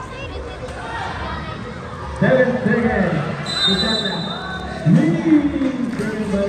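Loud nearby voices talking and calling out at a basketball game, with a short high whistle blast, likely the referee's, about three and a half seconds in.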